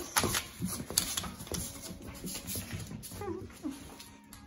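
Two dogs scuffling over shreds of torn paper on a hard wooden floor: irregular clicks and scuffles of claws, paws and paper.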